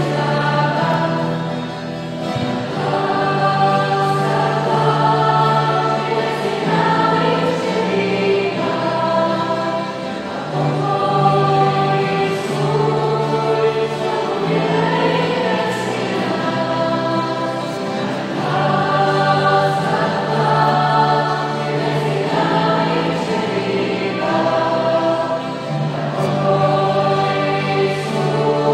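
A choir singing a slow sacred song in several parts, with long held notes over a steady low line.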